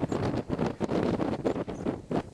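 Wind buffeting a handheld camera's microphone: a rough, uneven rushing with irregular gusts.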